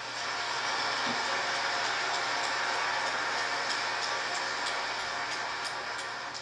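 A large audience applauding steadily, dying down slightly near the end.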